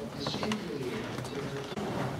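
Indistinct voices of several people talking in the background, too faint to make out words, with a few light clicks.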